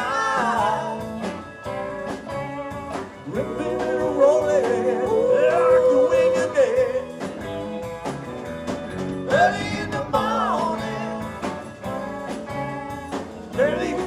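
Live blues-rock band playing an instrumental passage between sung lines: electric guitars and drums, with a bending, held lead melody rising out of the band twice.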